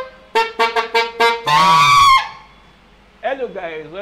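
Alto saxophone playing a phrase of short, quick notes, then one long held note that stops about two seconds in.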